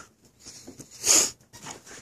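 A single short, sharp breath close to the microphone about a second in, with faint rustling around it.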